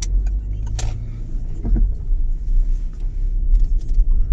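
Low, steady rumble of a Citroen C4 Picasso's 1.6 HDi diesel and its tyres at low speed, heard from inside the cabin, with a couple of sharp clicks, one at the start and one a little under a second in.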